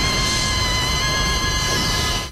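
Cartoon sound effect of a shockwave blast: a loud, high, steady ringing tone over a dense rushing noise.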